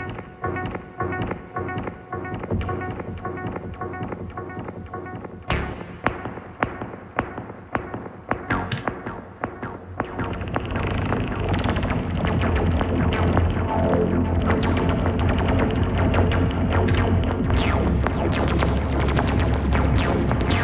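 Elektron Analog Four four-voice analog synthesizer playing a sequenced pattern: a steady rhythm of short pitched notes. About halfway through it grows fuller and louder, with a heavy bass part.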